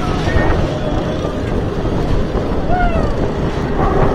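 Skyrush, an Intamin hyper coaster, with its train being hauled up the cable lift hill: a steady mechanical rumble with wind on the microphone.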